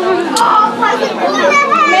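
Speech: a child's voice talking over the chatter of other children in a busy room.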